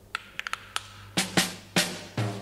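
Russian folk percussion from the cartoon's soundtrack. A few light, dry wooden clicks come first, then louder strikes begin about a second in: wooden spoons, a treshchotka clapper and a tambourine starting up a beat.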